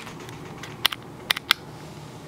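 Three sharp clicks in quick succession about a second in, over a faint steady hiss.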